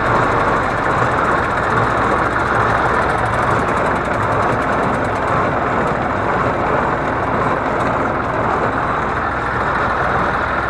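Fordson Dexta tractor's three-cylinder diesel engine running steadily at an unchanging speed, heard close up from the driver's seat.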